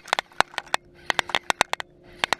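Fishing reel clicking in quick, irregular sharp clicks as line is worked right after a bass takes the bait, over a faint steady hum.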